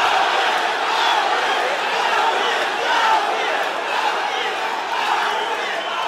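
A big arena crowd going crazy: steady cheering and shouting from many voices blended together.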